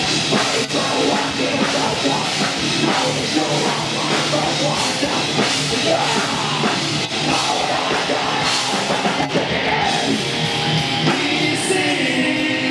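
A rock band playing live and loud, with electric guitars, a drum kit and a vocalist singing into a microphone.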